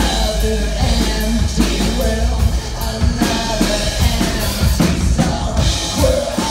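A live rock song: a man singing into a microphone over an acoustic drum kit, with a deep bass underneath.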